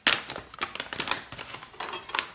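Crinkling of a pouch of maca powder being handled, a run of sharp clicks and rustles, the loudest right at the start.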